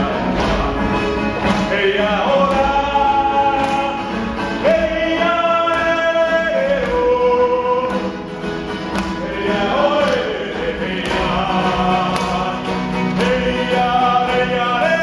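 A group of people singing a slow song together, the melody moving in long held notes, with a steady low tone underneath.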